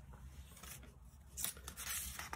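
Thin Bible paper rustling as a page is lifted and turned by hand, a few short dry rustles near the end.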